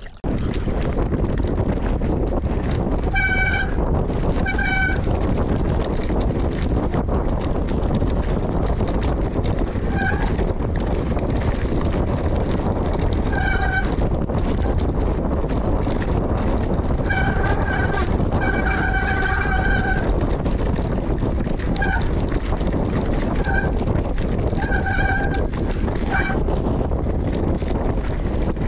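Mountain bike riding down rough singletrack: a steady, loud rumble of tyres on the trail and wind on the camera. Short high-pitched squeals come from the bike a dozen or so times, several close together near the end.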